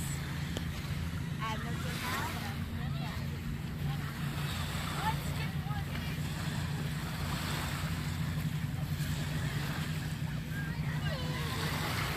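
Steady low drone of a distant motor, with small lake waves washing on the shore and faint voices in the background.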